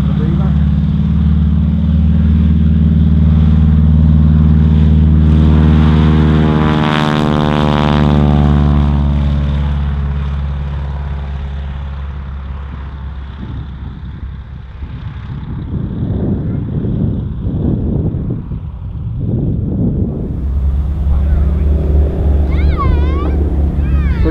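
Single-engine piston aircraft with a radial engine (de Havilland Canada DHC-2 Beaver) on its takeoff run, the engine building to full power. About seven seconds in, the tone sweeps as the aircraft passes close by. It then fades away as the plane climbs off, and the engine sound swells again near the end as it comes back toward the listener.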